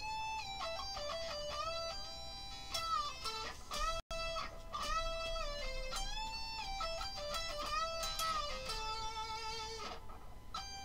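Electric guitar playing a single-note lead line high on the neck, around the 19th and 20th frets, with string bends that slide up to pitch and release back down. The sound cuts out for an instant about four seconds in.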